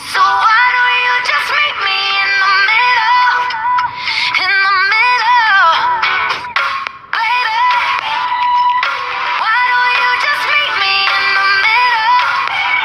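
Pop song with a high sung melody over a light backing with little bass; the voice holds notes with a wavering pitch and there is a brief drop-out just before the middle.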